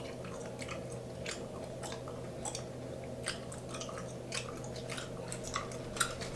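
Close-miked chewing of bubblegum: irregular wet smacks and clicks of the mouth working the gum, over a steady low background hum.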